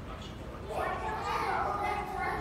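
A child's high-pitched voice, speaking or calling out indistinctly, starting under a second in over a low background murmur.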